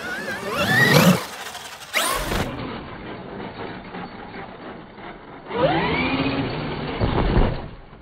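Traxxas XRT RC monster truck's electric motor and drivetrain whining up in pitch under hard throttle as its sand paddle tires churn through sand. It does this twice, about a second in and again past halfway, with a low thump near the end.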